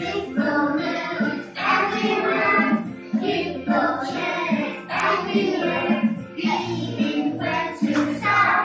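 A group of young children singing a song together in unison, with music playing along.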